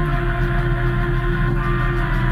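Live band jam music made of held, droning tones layered over a steady low bass note.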